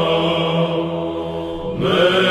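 Byzantine chant sung by a male psaltic choir: a long melismatic vowel held over a steady low ison drone, a kalophonic heirmos in the third tone. Near the end the melody voices briefly thin out, and a new phrase begins with a rising glide.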